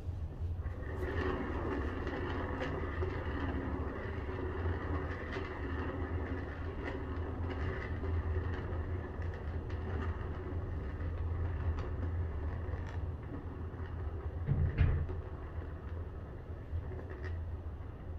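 Lazy susan turntable spinning under a heavy paint-covered round canvas, its bearings giving a steady low rolling rumble. Faint scattered clicks run through it, and there is one louder thump about fifteen seconds in.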